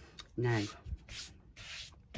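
Two short rubbing swishes of a hand sliding over a flat beading board as it is settled on a work mat.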